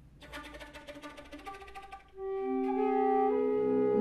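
A small mixed ensemble of flutes, clarinet and bowed cello playing together: first a soft, fast fluttering pattern, then about two seconds in they swell into a louder chord of long held notes.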